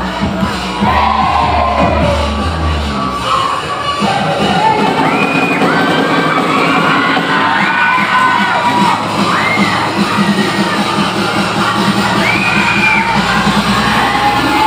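A crowd of spectators, many of them children, cheering and shouting over loud dance music with a steady beat. High shouts that rise and fall break out repeatedly through the middle.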